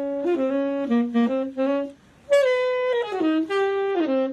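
Solo tenor saxophone muffled by a sock stuffed in its bell, playing a quick jazz line of changing notes. A short breath break about halfway through, then a new phrase.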